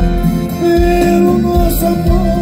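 Live sertanejo band playing, with accordion, electric guitars, bass and drums; a regular bass beat runs under a long held note that starts about a third of the way in.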